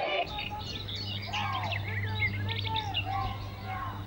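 Several birds chirping and calling in quick, overlapping short notes, with a steady low hum underneath.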